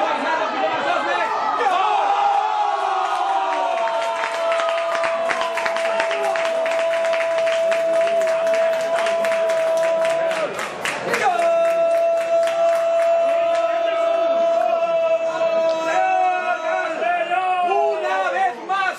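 A commentator's long, drawn-out shout of "gol" at a steady pitch, held in two breaths with a short break in the middle, celebrating a goal. Spectators clap and cheer underneath.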